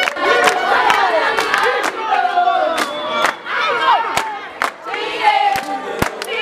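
A group of girls singing and shouting together excitedly, with irregular sharp hand claps among the voices.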